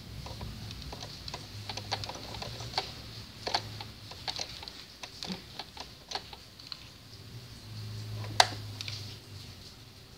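Scattered light clicks and fabric rustle as bias tape and cloth are lined up under a domestic sewing machine's presser foot, with a faint low hum from the machine in two short spells. A sharper click comes about eight and a half seconds in.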